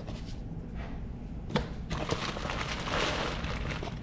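Plastic mailer bag crinkling and rustling as a cardboard box is pulled out of it, with a single knock about one and a half seconds in and the rustling growing louder in the second half.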